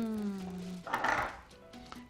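A man's long hummed "hmm", one held note that sinks slowly in pitch, followed about a second in by a short breathy hiss.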